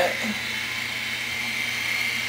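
Instyler rotating hot styler's small motor running as its barrel spins, a steady whir with a thin high whine.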